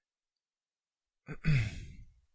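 A man coughs about a second and a half in, after more than a second of silence: a brief catch followed by one louder cough.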